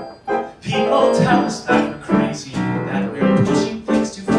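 Instrumental passage of a live band, with piano notes and chords leading.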